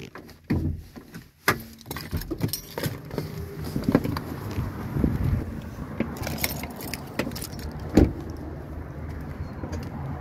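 Keys jangling, with a run of clicks and knocks from handling inside the vehicle as the hood release is reached for and the driver gets out. A louder thump comes about eight seconds in.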